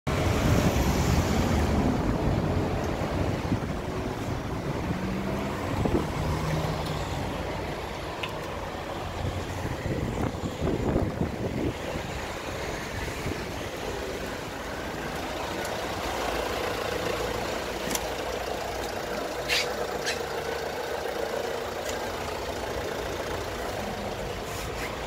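Steady motor-vehicle rumble and road noise, loudest in the first two seconds, with a few short clicks near the end.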